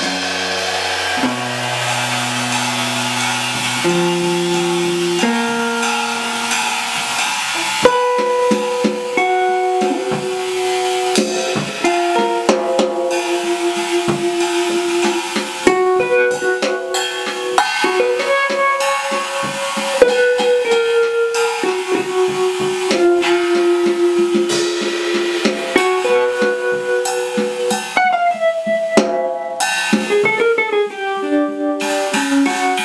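Live small-group jazz: an archtop electric guitar plays sustained notes and lines over a drum kit played with sticks on cymbals and snare. The drumming grows busier about eight seconds in.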